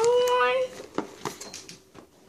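A drawn-out, rising "ohh" exclamation of a person's voice, ending about two-thirds of a second in, followed by a few light clicks and rustles of a cardboard gift box and wrapping paper being handled.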